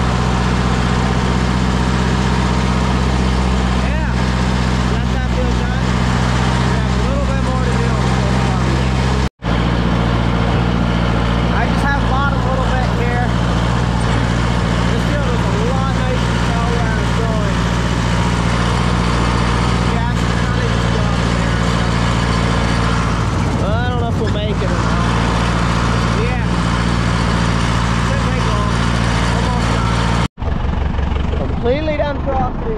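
Deutz D 6006 tractor's air-cooled diesel engine running steadily under way, heard from the driver's seat, with fainter wavering higher-pitched sounds over it. The sound cuts out for a moment about nine seconds in.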